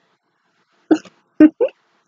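A woman giggling: three short laughs in quick succession, the middle one loudest.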